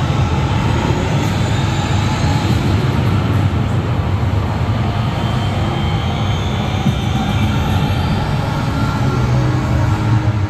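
Indoor steel roller coaster (Storm Coaster) train running on its track: a steady, loud, low rumble with no break.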